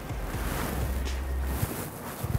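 Wind buffeting the microphone: a steady low rumble under a hiss, which drops away about three-quarters of the way through, followed by a faint knock.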